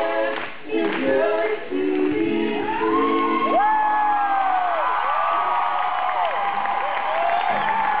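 Live concert vocals sung in harmony from the audience's position, with held notes in the first few seconds. From about two and a half seconds in, loud rising-and-falling whistles and cheering from the crowd take over as the song ends.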